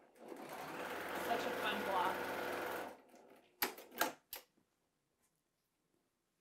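Electric sewing machine running in one steady burst of nearly three seconds, then stopping. Three sharp clicks follow about a second later.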